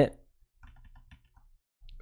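Faint, light ticking and tapping of a pen stylus on a graphics tablet as handwriting is drawn, a few small ticks about half a second to a second in.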